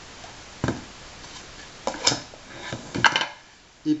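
Kitchen handling noises: a few sharp clinks and knocks of a spoon and a plastic tub of egg-white powder as the powder is spooned into a blender jug and the tub is set down on the table. The loudest knocks come around two and three seconds in.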